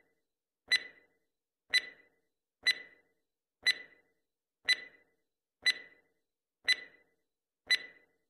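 Countdown-timer tick sound effect, one sharp tick with a short ringing tail every second, eight times in step with a clock counting down.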